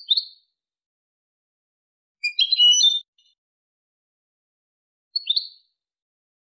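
European goldfinch (jilguero) song in the Málaga style: three short high phrases, one at the start, a longer and more intricate one about two seconds in, and a short one near five seconds, with dead silence between them.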